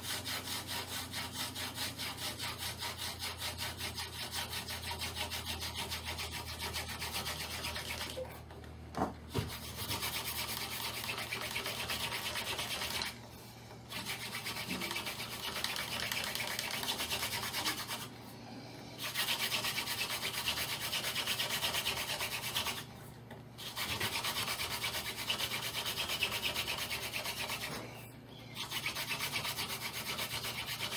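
Wooden hand-drill spindle spun back and forth in the notch of a wooden hearth board: a dry, rhythmic wood-on-wood rubbing that stops briefly about every five seconds. The friction is grinding out dark powdery dust in the notch on its way to forming a coal ember.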